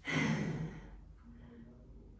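A woman's sigh: one breathy, partly voiced exhale at the start, fading within about a second.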